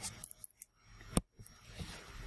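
A stylus tapping on a tablet screen: a few short, sharp clicks, the loudest a little over a second in.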